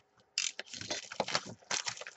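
Sealed box of trading cards being torn open by hand, its plastic wrapping and cardboard crackling and ripping in a rapid run of sharp clicks that starts about half a second in.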